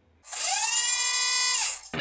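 Intro sound effect: a loud hissing whine that rises and then falls in pitch, lasting about a second and a half and cutting off abruptly.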